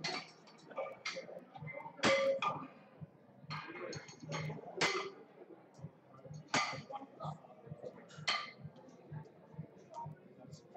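Metal weight plates clanking on a barbell as loaders change the weight on a bench-press rack: a series of sharp clanks every second or two.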